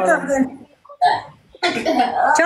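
A woman speaking over a live video call, with a short break in her speech about half a second in and a brief vocal sound near one second before the talk resumes.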